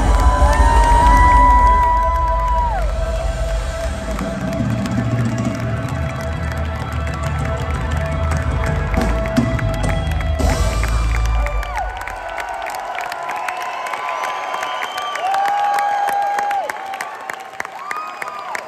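Live rock band with electric guitars and drums playing out the end of a song, the low end stopping about twelve seconds in. A concert crowd cheers and shouts over it and carries on after the music stops.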